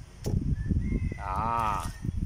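A cow mooing once, a short call of under a second about halfway through, over low rumbling noise.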